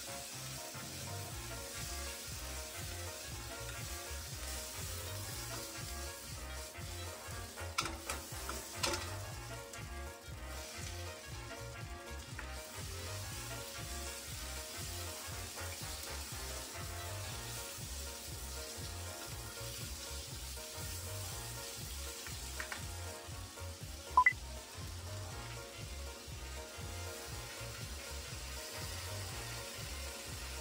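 Sliced onion and carrot frying in a nonstick pan, a steady sizzle, stirred with a plastic spoon. A few light clicks come through, and one short, sharp, ringing clink about two-thirds of the way through is the loudest sound.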